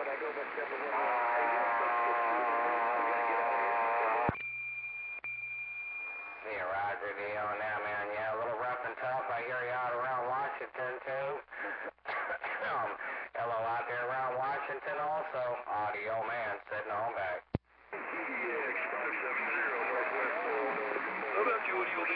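Voices of distant stations coming in over a CB radio speaker, garbled and fading in and out. A click about four seconds in is followed by a steady high tone for about two seconds, and another click comes a few seconds before the end, where a clearer voice takes over.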